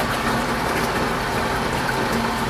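Water rushing steadily at about 400 gallons per minute through a four-inch see-through wafer-style check valve on a pump test loop, with a low steady hum under the rush. The valve's poppet sits steady in the flow, with no chatter or knocking.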